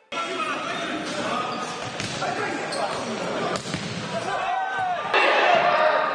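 Futsal game sound in an indoor sports hall: players' voices calling, shoes squeaking on the court, and a few sharp ball strikes.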